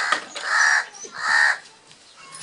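A crow cawing twice, two harsh calls of under half a second each, the first about half a second in and the second just over a second in.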